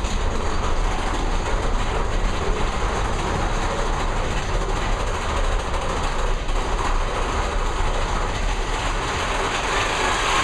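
Mine-train roller coaster cars climbing a lift hill, a steady rattling rumble of the train's wheels and track.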